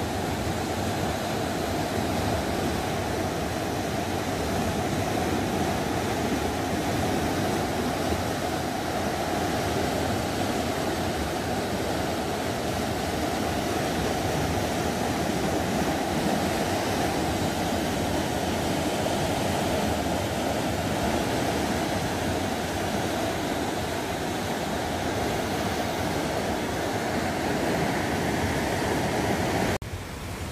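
A flood-swollen, muddy river rushing and churning in turbulent eddies: a loud, steady rush of water.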